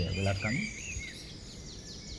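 Small birds chirping in the background, a run of quick falling chirps, while a man's voice stops about half a second in.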